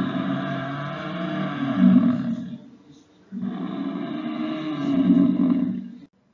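African buffalo calling: two long, low calls, each swelling louder toward its end, with a short pause between them about two and a half seconds in.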